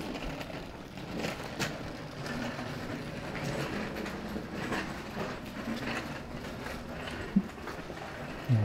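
A train running past, heard as a steady rumble with faint scattered clicks.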